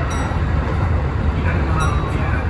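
Kintetsu express train running at speed, heard from inside the front car: a steady low rumble of wheels on the rails and running gear.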